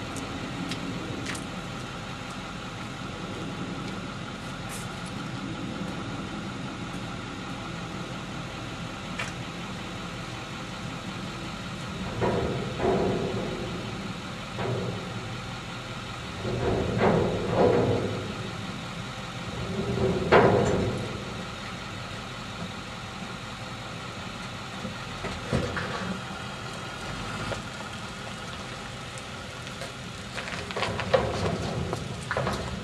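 Work truck's engine running as it pulls away down the street, with a few louder swells in the middle as it accelerates off.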